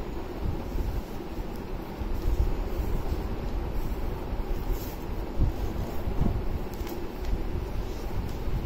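Paper being folded and its creases pressed and rubbed flat against a plastic lap desk, over a steady low rumble.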